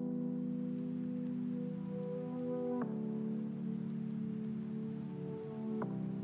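Background music of soft sustained chords, changing chord about three seconds in and again near the end, over a faint pattering hiss like rain.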